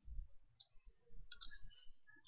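Faint clicks of a computer mouse and keyboard: one click about half a second in, then a short cluster of clicks past the middle.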